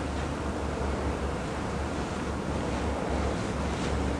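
Steady low rumbling noise with a hiss above it, unbroken and without strokes or tones.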